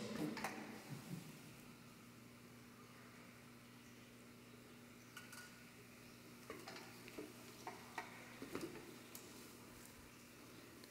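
Near silence: quiet room tone with a steady low hum, broken in the second half by a few faint, brief clicks and taps of handling as a small candle is held up to a large candle's flame.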